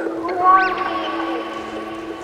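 Electronic track's synthesizer sounds: a steady low drone, joined about half a second in by a swooping whistle-like synth tone that rises sharply, falls back, and then holds as a sustained chord.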